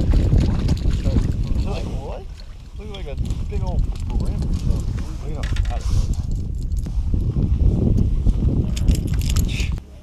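Wind rumbling on the camera's microphone, with short muffled voices from about two to four seconds in. The rumble cuts off suddenly just before the end.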